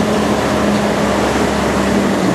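Diesel engine of a red Fiat tractor pulling a trailer, running steadily at low speed; its note drops slightly near the end.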